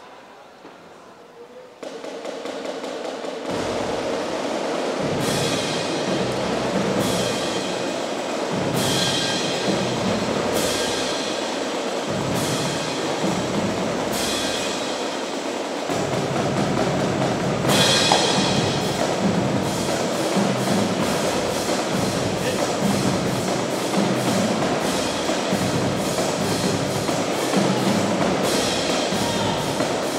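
Children's marching percussion corps playing snare drums, bass drums and cymbals. The playing comes in about two seconds in and grows louder a second later, with repeated cymbal crashes over a steady drum beat.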